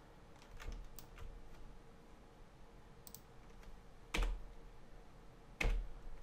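A few keys tapped on a computer keyboard as scattered light clicks, with two louder knocks in the second half.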